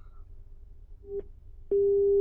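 Telephone line tone coming through the studio's phone-in line after the caller's connection drops. A short beep sounds about a second in, then a loud steady tone starts near the end.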